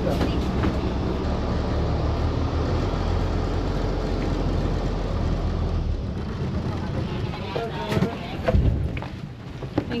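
Ferry engine droning steadily in the passenger cabin, a low even hum under background voices. The drone drops away about six seconds in, leaving quieter voices and a couple of thumps.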